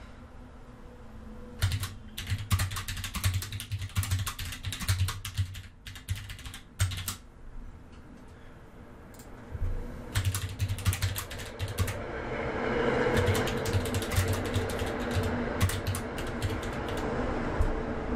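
Typing on a computer keyboard: two runs of quick keystrokes with a pause of about two seconds between them. A steady background hum comes up about two-thirds of the way through, under the second run.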